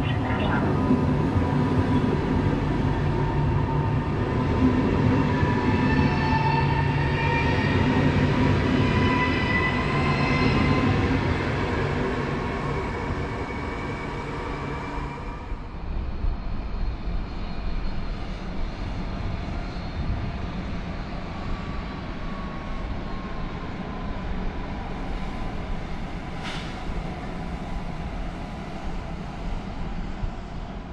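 A train running at the station, a steady low rumble with a whine that rises in pitch over the first dozen seconds. About halfway through the sound drops abruptly to a quieter rumble with a faint falling tone.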